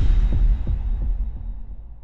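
Electronic intro sound effect: a deep bass boom at the start, followed by low pulses about three a second that die away toward the end.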